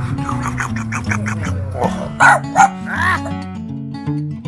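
Acoustic guitar background music, with a bulldog barking three or four times in the middle, the barks louder than the music.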